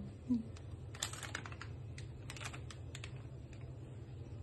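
Light clicks and taps from kitchen items being handled, in two short flurries about a second in and again past two seconds, over a steady low hum.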